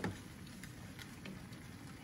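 Steady bubbling from pans on a stove: a pot of broccoli water at the boil beside a wok of chicken simmering in oyster sauce. A utensil knocks against the pot right at the start, with a few faint clicks of the spoon after it.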